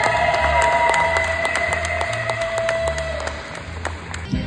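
A young female singer with a microphone holds one long final note over violins and a low, pulsing bass accompaniment. The song fades out about three and a half seconds in, with scattered clapping from the audience.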